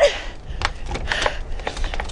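Scattered light clicks and a brief rustle about a second in, over a steady low rumble of wind on the microphone.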